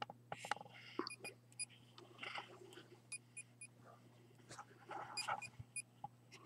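Short, high electronic beeps in three quick runs of three or four, amid faint rustling and small clicks of handling, over a faint steady low hum.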